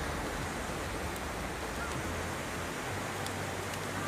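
Fast-flowing muddy floodwater rushing through a street, a steady, even rush of water.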